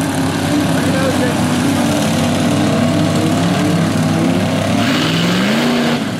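Lifted mud truck's engine running hard under load as it churns through deep mud, with its pitch rising as it revs up near the end.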